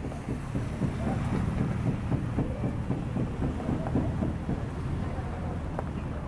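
Soba knife chopping down through folded buckwheat noodle dough onto a wooden board: a quick run of soft knocks over a steady low background rumble.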